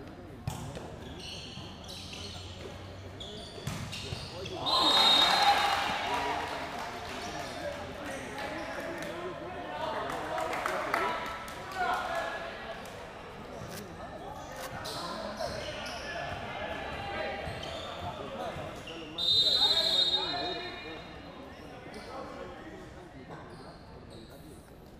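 Indoor volleyball match with crowd chatter echoing in a large hall and scattered knocks of the ball being struck. Twice, about five seconds in and again near the end, a short high whistle blast comes with a burst of crowd cheering that dies away over a second or two.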